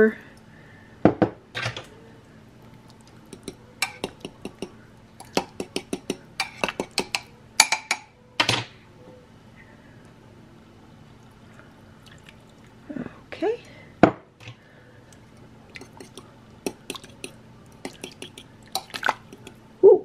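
A metal fork clinking and tapping against a ceramic slow-cooker crock while a cornstarch slurry is poured in and stirred into the simmering liquid. The clinks come in irregular clusters, busiest in the first half, with one sharp knock a little past the middle.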